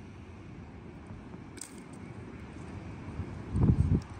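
Quiet outdoor background noise, with a brief, loud low rumble on the microphone near the end.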